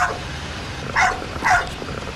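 Dalmatians barking: short single barks, two of them about a second in, half a second apart.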